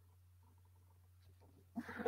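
Near silence: room tone with a faint, steady low hum.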